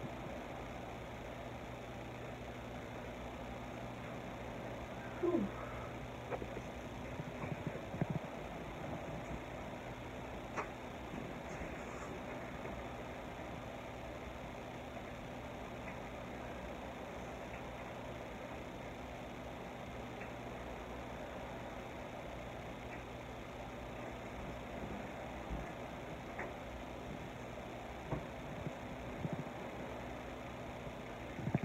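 Steady low hum of room noise, with a few faint clicks and a brief falling sound about five seconds in.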